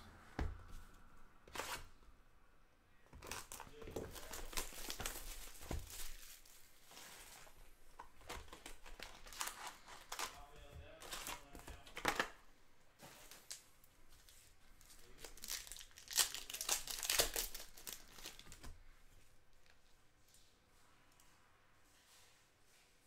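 Plastic shrink wrap being torn off a trading-card hobby box, then foil card packs crinkling as they are taken out and stacked. It comes in several spells of tearing and crinkling with quieter handling between.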